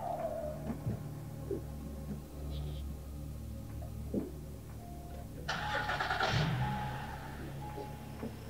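SUV engine being cranked and starting about five and a half seconds in, a noisy burst lasting over a second, after a few soft knocks as the driver gets in. Background music plays underneath.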